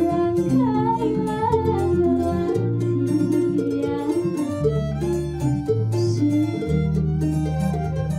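Keroncong ensemble playing: a woman sings over violin, flute and small ukulele-like keroncong lutes, with a plucked bass line moving about once a second.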